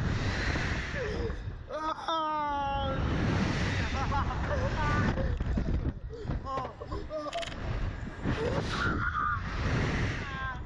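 Wind buffeting the microphone of a Slingshot reverse-bungee ride's onboard camera as the capsule is flung and swings, with the riders screaming and crying out; one long held scream comes about two seconds in.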